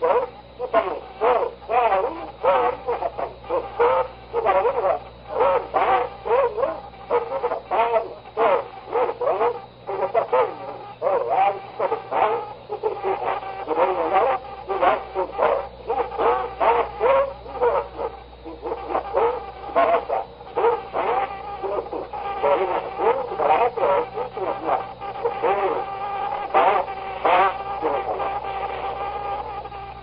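A man's voice speaking Portuguese on a poor-quality 1964 tape recording, dull and hard to make out, with a steady low hum running underneath.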